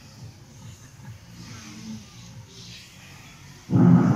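Faint, steady outdoor background noise of a large seated gathering, then a loud low rumble near the end.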